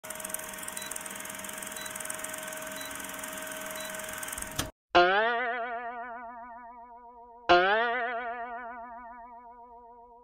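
An old-film countdown sound effect: a steady hiss with a low hum and a faint tick about once a second, cut off suddenly just before halfway. It is followed by two cartoon 'boing' spring sound effects about two and a half seconds apart, each wobbling and fading away.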